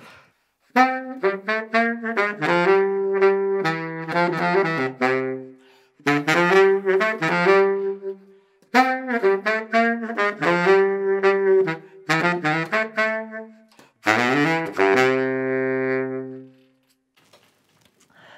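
Yamaha YBS-480 baritone saxophone played solo: four short melodic phrases with brief breaks for breath, the last ending on a long held note.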